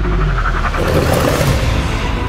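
Movie-trailer sound design and score: a heavy, deep rumble with a loud swell of whooshing noise about a second in, building into the title reveal.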